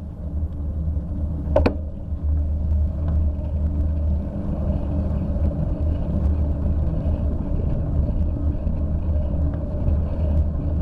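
Steady low wind-and-road rumble on a bicycle-mounted camera while riding along a wet asphalt road, with one sharp click about a second and a half in.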